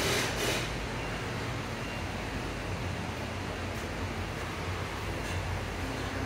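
Steady background hiss with a low hum, like a shop's ventilation or fan running, with a brief rush of noise at the very start and no distinct event.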